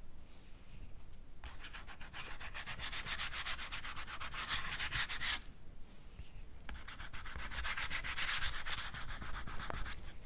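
Rapid back-and-forth rubbing on paper as oil stick colour is worked into a painting, in two long spells with a brief pause about halfway through.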